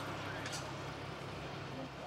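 A steady low engine hum under an even hiss, unbroken throughout.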